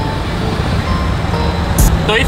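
Busy city road traffic, cars and auto-rickshaws passing close by, a steady rumble with a brief high hiss near the end.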